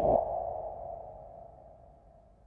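A single sustained ringing tone that fades steadily away over about two seconds: a sound effect in the drama's soundtrack.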